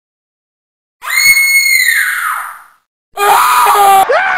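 A loud, high-pitched human scream starts about a second in, holds steady for over a second and trails off. After a brief silence a second, lower-pitched scream or yell slowly falls in pitch.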